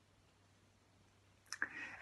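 Near silence, then near the end a man's mouth click and a short, quiet intake of breath just before speech.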